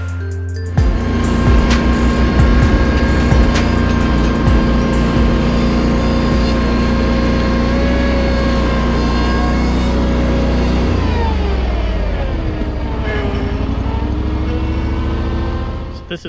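Ventrac tractor engine running steadily under load while its Tough Cut mower cuts overgrown field grass. About eleven seconds in the engine pitch drops over a couple of seconds as it throttles down, then runs on at the lower speed. Music fades out in the first second.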